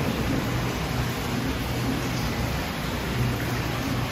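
Aquarium tank's aeration and water circulation running: a steady hiss of water and bubbles with a low hum underneath.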